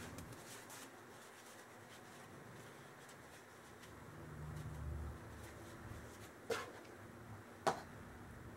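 Faint handling noise of a shop towel rubbing and wiping a small greasy airgun piston, with two sharp clicks near the end, about a second apart, as small metal parts are set down on the tabletop.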